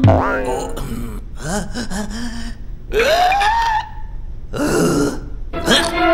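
A cartoon character's wordless vocal sounds: low grunts and groans, then a rising, questioning 'ooh' about three seconds in.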